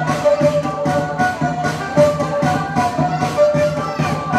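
Amplified Black Sea kemençe (Karadeniz bowed lyre) playing a fast horon dance tune: quick repeated melodic figures over a steady pulse of about four accents a second.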